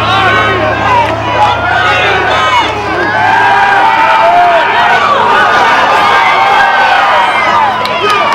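Football crowd in the stands yelling and cheering during a play, many voices at once. A low hum underneath drops away about three seconds in.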